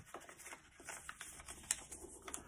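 A sheet of paper being folded and creased by hand: faint rustling with scattered small ticks, and one sharper click near the end.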